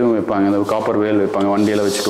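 A man speaking, with a short rubbing noise near the end.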